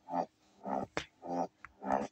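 A voice repeating a short syllable four times, about twice a second, with a sharp click about a second in.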